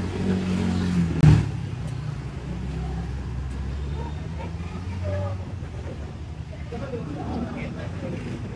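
Street traffic: a vehicle engine running close by, fading out about five seconds in, with one sharp knock just over a second in. Faint voices carry on behind it.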